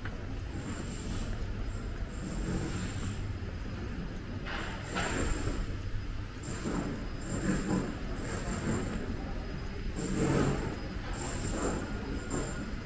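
Outdoor city street ambience in a cobbled pedestrian lane: a steady low rumble, with a thin high squeal that comes and goes many times and a few louder passing noises.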